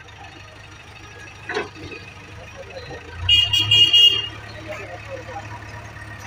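JCB 3DX backhoe loader's diesel engine running steadily. About three seconds in it gets louder for about a second, with a high steady tone sounding over it, then settles back.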